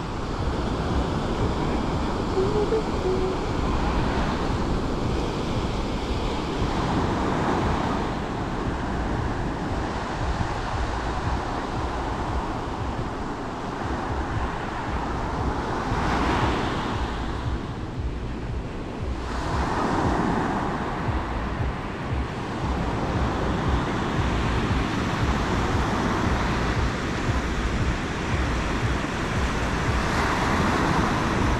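Ocean surf breaking and washing up the beach in repeated surges, with wind rumbling on the microphone. The surf swells loudest about sixteen and twenty seconds in.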